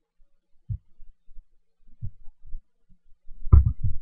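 A few soft, low thumps, then a louder thud about three and a half seconds in.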